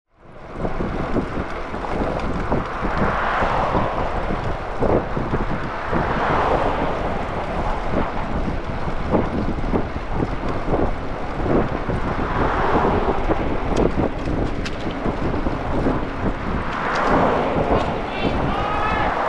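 Wind buffeting the microphone of a camera on a moving bicycle, with the noise of passing traffic swelling and fading about four times.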